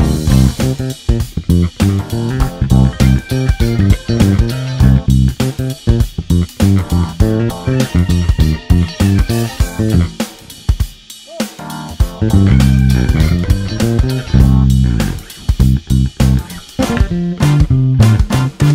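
Five-string Yamaha BB735A electric bass playing a groove through an Ampeg Portaflex amp over a backing track with drums, with a short break about eleven seconds in.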